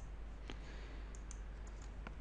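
Faint, scattered clicks of a computer mouse and keyboard, a few taps spread across the pause, over a low steady hum.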